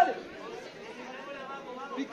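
Background chatter of several voices talking at once, after a loud shout breaks off right at the start.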